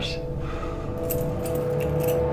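A bunch of keys jangling in a few light clinks through the second half, over a steady held music tone.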